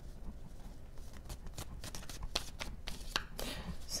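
A deck of tarot cards shuffled and handled by hand: soft, irregular card clicks and taps.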